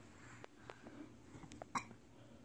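A toddler gives one short hiccup near the end, in a quiet room with a few faint clicks.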